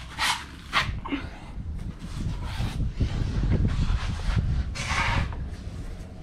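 Camera handling and body movement as a person gets down under a pickup: low rumbling and rustling, with a few short breathy puffs about a third of a second in, near one second and about five seconds in.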